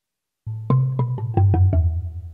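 Godin LGXT guitar played through a guitar synthesizer patch: a quick descending run of about seven picked notes with a percussive, mallet-like attack over a deep bass tone, starting about half a second in and dying away near the end.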